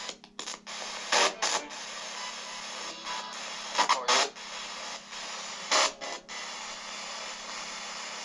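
Steady electronic static hiss with a low hum from a handheld device, broken by a few short, louder bursts of crackle, the first two about a second in and others near the middle.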